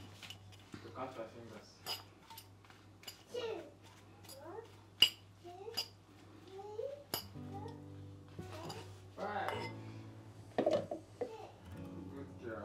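Metal fork clinking and scraping against a ceramic salad bowl while a salad is tossed and eaten: a run of sharp clinks, the loudest about five seconds in. Faint voices and background music sit underneath.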